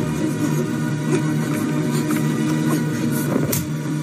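Film soundtrack: music with a steady low drone, mixed with the sound of a car engine running.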